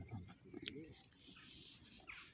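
Faint eating sounds: a couple of small clicks about half a second in and soft rustling as fingers pick meat off a roast chicken. A short spoken word comes right at the start.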